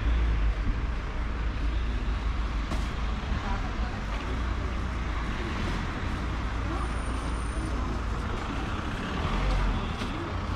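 City street ambience: a steady wash of road traffic noise with a low rumble.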